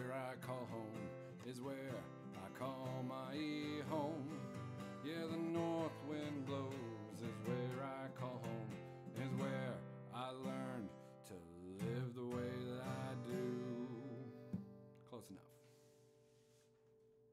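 Acoustic guitar strummed under a man's singing voice in a song's final chorus. About fifteen seconds in, the song ends on a last strum that rings out and fades.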